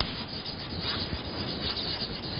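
Handwriting on a writing surface: short, irregular scratching and rubbing strokes of the writing tool.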